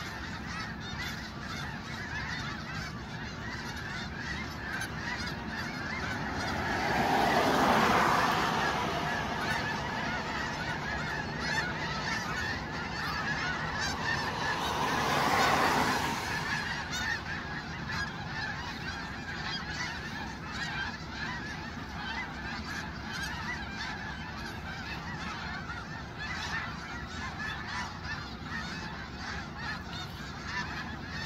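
A large flock of snow geese calling overhead, a dense continuous chorus of honking calls. About seven seconds in and again about fifteen seconds in, a broad rushing noise swells up and fades away over the calls.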